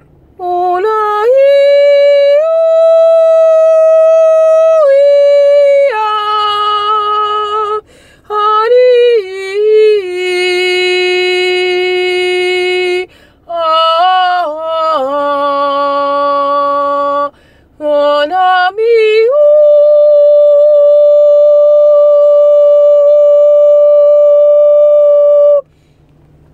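A woman singing solo without accompaniment, holding long steady vowel tones and sliding quickly up and down between them in short phrases with brief breaks. The last note is held steady for about six seconds.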